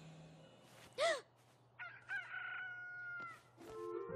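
Rooster crowing as the morning wake-up cue: a short rising-and-falling note about a second in, then a longer cock-a-doodle-doo that holds and slowly falls away.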